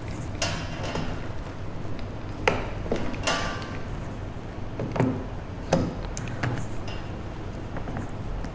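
Scattered clicks and knocks of small plastic and metal parts being handled as a limit switch and its wire connectors are fitted on the aluminium rail of a pneumatic trainer panel, with a few brief rustles between them.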